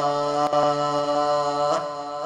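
Male qari reciting the Quran in melodic tajwid style, holding one long steady note that breaks off near the end.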